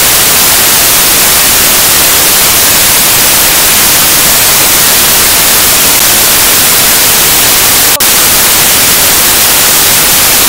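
Loud, steady static hiss like white noise, standing in for the programme sound as a signal or recording fault. There is one brief dip about eight seconds in.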